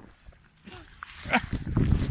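Short excited vocal calls from a person, with some gliding in pitch, over low rumble from wind and handling of the moving camera that is loudest near the end.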